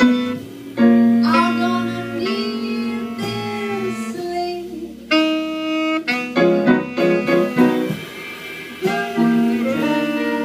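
Live jazz combo playing an instrumental passage with no singing: long held melodic notes that break off and start again, over piano and bass.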